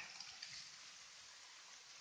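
Near silence: only the faint, steady rush of a small waterfall running down basalt columns.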